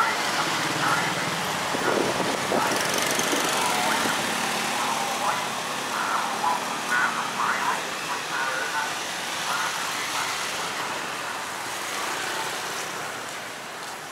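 Street traffic with a motor scooter passing close by at the start, mixed with scattered voices of people talking.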